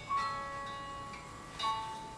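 Background music: a slow melody of single plucked notes that ring out and fade, one just after the start and another about a second and a half in.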